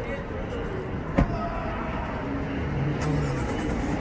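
Steady city street traffic noise from passing and idling cars, with a single sharp knock about a second in.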